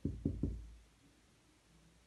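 A marker pen knocking against a whiteboard while writing: three short, dull knocks in the first half second.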